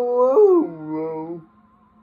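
A man singing a long held vowel that slides down in pitch about half a second in. He holds the lower note and breaks off at about a second and a half.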